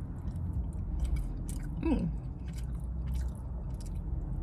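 A person chewing a mouthful of thick, soft fresh-cut noodles close to the microphone, with many small wet mouth clicks, over a steady low hum. A short 'mm' comes about two seconds in.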